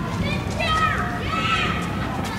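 People shouting in the street: two drawn-out, high-pitched calls, over a steady low rumble.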